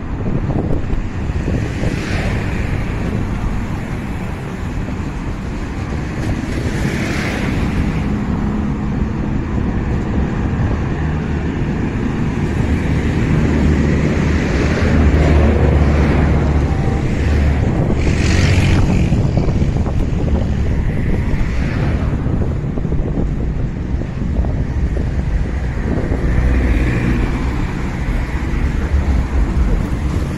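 Road traffic passing close by, several cars swelling past a few seconds apart, over a steady low rumble of wind buffeting the microphone.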